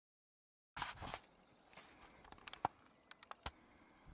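Dead silence for under a second at an edit, then faint open-air background with a string of sharp clicks and taps.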